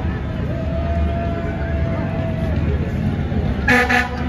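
A fire truck's air horn gives one short, loud blast near the end, over the low steady rumble of a tiller ladder fire truck's engine passing at slow speed.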